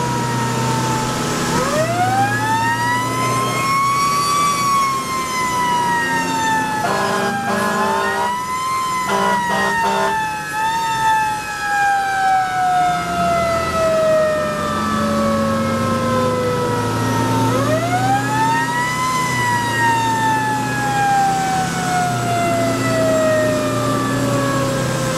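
Fire engine's wail siren heard from inside the cab, over the truck's engine hum. The siren rises quickly and then winds slowly down, three times. A few short horn blasts come around the middle.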